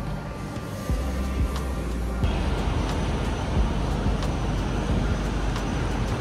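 Road traffic: a steady rush of car engine and tyre noise, getting louder about two seconds in as a vehicle passes.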